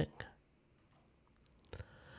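Near silence broken by a few faint, quick clicks about one and a half seconds in.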